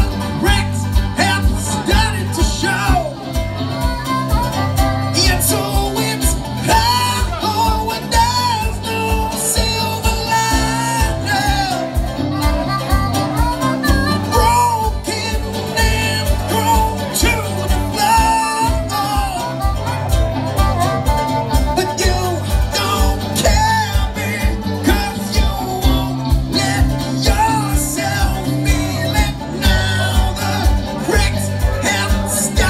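A live roots band plays an instrumental stretch with no words sung: a harmonica wails over electric guitar, bass guitar and a steady drum beat.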